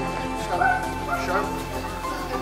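Background music with held tones, over which a dog barks or yips twice, about half a second in and again just after a second.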